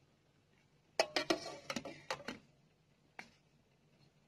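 Metal steamer lid and pan clattering: a quick run of sharp clicks and knocks about a second in, then a single click about two seconds later.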